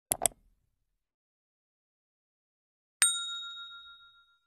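Subscribe-animation sound effects: a quick double click right at the start, then, about three seconds in, a single bell ding that rings and fades away over about a second.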